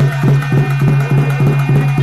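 Traditional folk music: large frame drums beaten fast and evenly, about five strokes a second, over a steady held tone.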